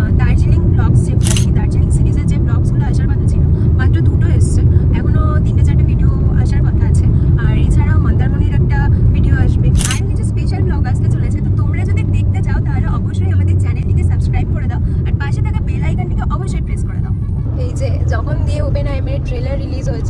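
Talking over the steady low rumble of road and engine noise inside a moving car's cabin.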